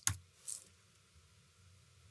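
A couple of faint computer mouse clicks, one right at the start and a short one about half a second in, then near silence.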